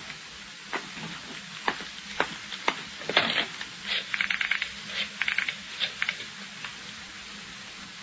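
Radio-drama sound effect of a telephone being picked up and dialled: scattered clicks, then several quick runs of ticks from the dial about three to five seconds in.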